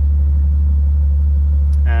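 Steady low rumble of a car engine idling.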